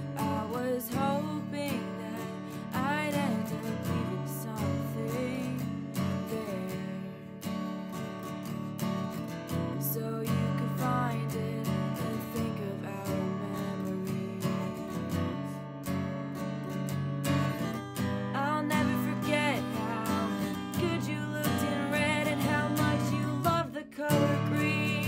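A woman singing an original song over a strummed acoustic guitar, recorded on a phone's microphone. Her held notes waver with vibrato.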